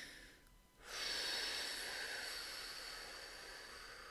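A woman taking one long, deep breath through her nose, starting about a second in and slowly fading away.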